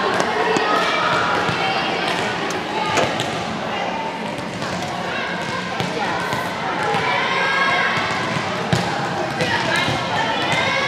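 Volleyballs being hit and bouncing on a hardwood gym floor: scattered sharp knocks throughout. Players' voices chatter indistinctly beneath them, in a large gym.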